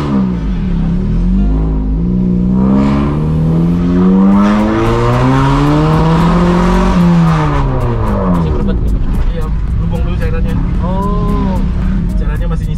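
Car engine heard from inside the cabin, its pitch climbing steadily for several seconds as the car accelerates, then dropping away, with a short rise and fall again near the end.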